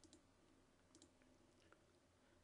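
Near silence with a few faint computer mouse clicks: one at the start and two close together about a second in.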